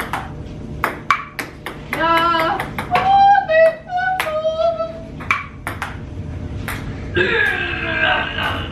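Table tennis rally: a celluloid-type ping-pong ball clicking sharply off paddles and the table, several hits a second at times. Wordless vocal sounds, a drawn-out pitched call in the middle, are mixed in, with voices again near the end.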